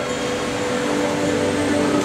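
Keyboard holding steady sustained chords as a worship song begins, over a steady hiss of room noise.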